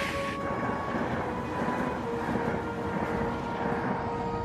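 Train running at speed, a steady rolling rumble, under sustained background music notes. A brief hiss fades out right at the start.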